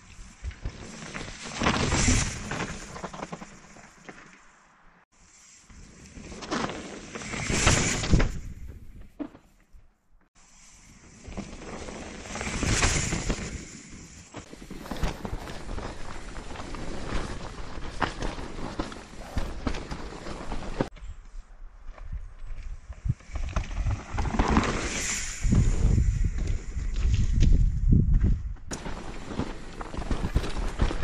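A mountain bike ridden on a dirt forest trail: tyre noise on dirt, wind on the microphone and the bike rattling, rising and falling in several swells. The sound breaks off suddenly a few times, and heavy low thumps come over rough ground near the end.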